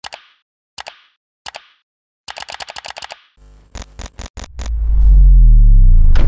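Designed sound effects for an animated logo sting: three sharp mouse-style clicks in the first second and a half, a quick rattle of clicks, a stuttering digital glitch, then a loud deep bass tone that swells and slides down in pitch near the end.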